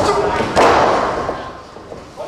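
A wrestler's body hitting the wrestling ring canvas: a sharp slam at the start and a louder thud about half a second in that rings out through the ring and the room over the next second, with crowd voices around it.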